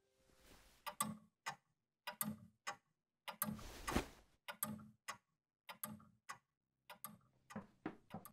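A black plastic bin bag crinkling as a white cloth sheet is stuffed into it, in irregular bursts of sharp crackles with a longer rustle about three and a half seconds in.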